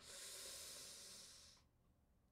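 A man's long, breathy hiss of breath for about a second and a half, the sound of someone weighing a decision, which then stops.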